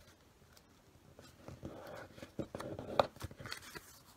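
A sheet of magazine paper being folded and pressed down on a wooden tabletop, rustling and crinkling with several sharp clicks. It starts about a second in, and the loudest click comes near the three-second mark.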